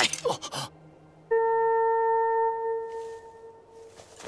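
A single held tone from the soundtrack starts abruptly about a second in and slowly fades away over the next few seconds. It comes just after the last word of a man's line.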